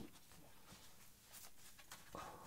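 Near silence: room tone, with a few faint brief rustles.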